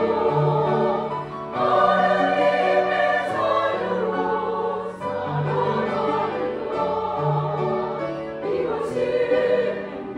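A choir singing a hymn in parts with grand piano accompaniment, in sustained phrases with short breaks for breath.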